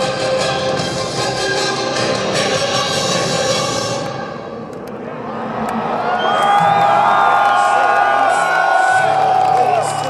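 Taped intro music over a festival PA fades out about four seconds in. A large outdoor crowd then cheers, screams and whistles, and a steady low synthesizer note comes in near the end.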